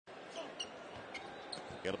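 Basketball game court sound: a steady arena crowd murmur with a ball being dribbled and several short, high sneaker squeaks on the hardwood floor. A commentator starts to speak right at the end.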